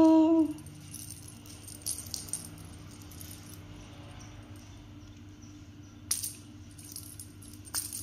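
A small jingle bell on a cat's wand toy mouse jingling and clicking faintly a few times, about 1, 2 and 6 seconds in, as the cat bats and bites the toy on the tile floor. A woman's brief exclamation ends in the first half-second.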